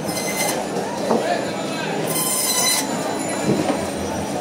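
Electric band saw running steadily while cutting silver carp into steaks, its blade giving a shrill high squeal twice, near the start and again about halfway through, as the fish is pushed through.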